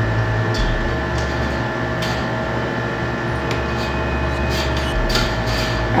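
A steady background hum holding several fixed tones, with a few faint clicks and rustles as the microphone and its cable are handled on the boom arm.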